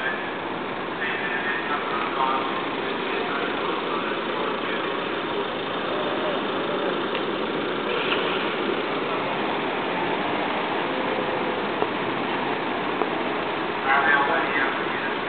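Car and scooter engines idling and moving slowly along a street, over a steady murmur of crowd voices.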